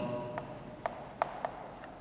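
Chalk writing on a chalkboard: light scratching with several short, sharp taps as the chalk strikes the board to form letters.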